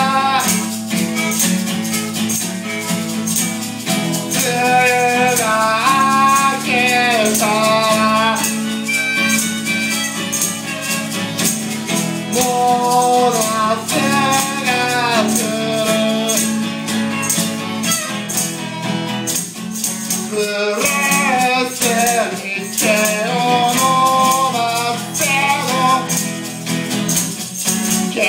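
Live acoustic song: a male voice singing over a strummed acoustic guitar, with a handheld tambourine shaken in a steady rhythm.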